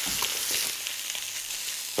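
Steak sizzling steadily in olive oil on a very hot ridged grill pan, a steady high hiss with a few faint crackles.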